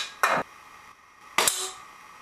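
Two sharp air-pistol shots at drink cans, one just after the start and one about one and a half seconds in, the second with a short fading tail as a can is knocked over.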